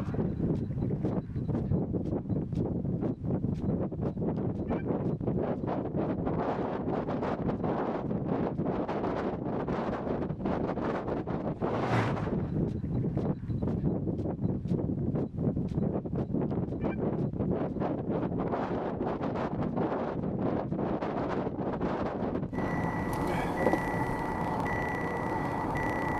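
Strong gusting wind buffeting the microphone: a steady rushing noise with many crackling gusts. About 22 seconds in it gives way to a vehicle's interior sound with a steady high electronic tone.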